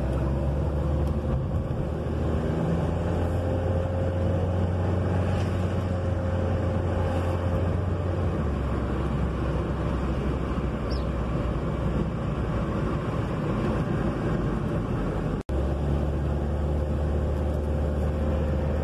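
Steady road noise of a car driving, heard inside the cabin, with a low drone under an even hiss. The sound cuts out for an instant about fifteen seconds in.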